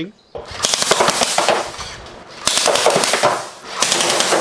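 Home-made full-auto Coke-bottle Gatling gun firing: a fast clattering rattle of shots in three bursts, the first about two seconds long, the next two shorter.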